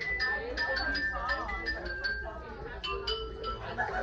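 A quick run of light, ringing metallic strikes, several a second, each ringing at a different pitch, over people talking in a room.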